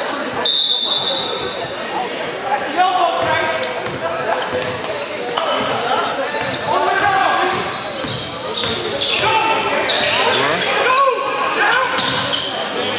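Live basketball gym sound: a basketball dribbled on the hardwood court, with players' and spectators' voices carrying through the echoing hall. About half a second in there is a short, steady high tone.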